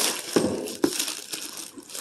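Plastic mailer bag crinkling and rustling as it is pulled open by hand, with a few sharp crackles.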